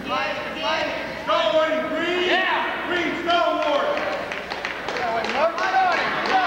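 Several men shouting and calling out over one another, in loud, overlapping bursts, as wrestling coaches and spectators yell encouragement from the sidelines.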